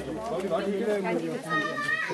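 Crowd of people talking over one another, with children's voices among them.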